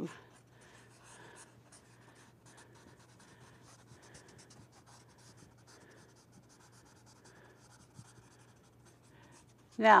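Pencil shading on drawing paper: soft, quick scratchy strokes repeated throughout, over a low steady electrical hum.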